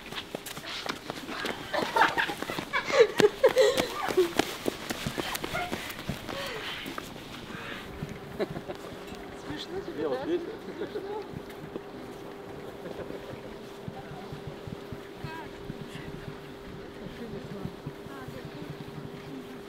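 Women's voices calling out, loudest a couple of seconds in, over sharp knocks and footsteps. From about eight seconds in it is quieter: a group's footsteps on wet pavement, a few voices and a steady hum.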